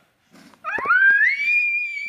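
A young child's high-pitched squeal that rises sharply in pitch about half a second in, then holds steady on a shrill note for over a second.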